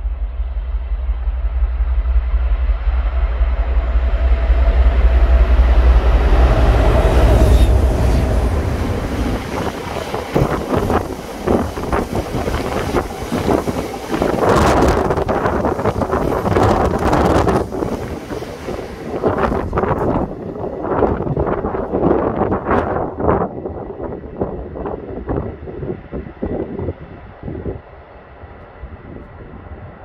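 A pair of Colas Rail Class 56 diesel-electric locomotives working in multiple pass with a loud, low engine note that peaks about six seconds in and drops away around eight seconds. A rake of freight wagons follows, its wheels clattering over the rail joints in quick, irregular knocks that fade near the end.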